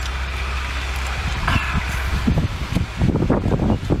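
Eating sounds of cooked shellfish being bitten, chewed and handled over a steady low outdoor rumble, with a dense run of short crisp cracks and clicks from about three seconds in as a sea snail shell is worked in the hands.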